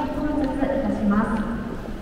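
Footsteps of a crowd of commuters walking on the hard floor of a busy station concourse, heard under a voice speaking in the hall.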